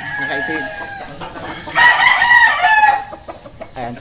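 A game rooster crowing once, loud, about two seconds in and lasting about a second, with other fowl calling more faintly before it.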